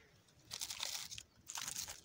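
Fingers scraping and rubbing the rough, flaky bark of an old olive trunk, clearing round an old pruning cut: a faint crackly scratching in two short spells.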